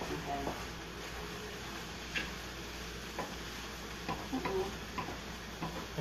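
A utensil stirring mushrooms and vegetables in a skillet, with a few light clicks of the utensil against the pan over a faint steady hiss.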